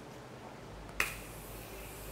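Aerosol hairspray can: a sharp click about a second in as the nozzle is pressed, then a short, fading hiss of spray.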